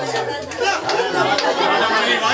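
Several people talking over one another: group chatter, with a voice saying "no, no" near the end.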